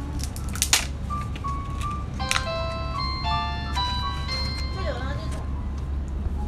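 Electronic chime playing a short melody of clear, bell-like notes over a steady low hum, with a sharp click about a second in.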